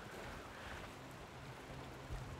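Faint, even wash of choppy water around a camera held just above the surface, with a faint steady low hum coming in about a second in.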